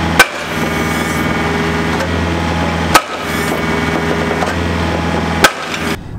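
Excavator-mounted drop-hammer pile driver driving a timber pile: the rig's engine runs steadily while the hammer strikes the pile three times, about two and a half seconds apart.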